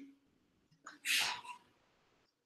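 A single short, breathy burst of breath from a person about a second in, with near silence around it.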